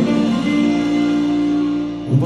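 Live rock band holding a guitar chord that rings steadily, with no singing, easing off slightly near the end.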